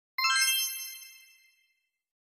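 A bright chime sound effect: a quick cascade of bell-like notes struck just after the start, then ringing out and fading away within about a second and a half.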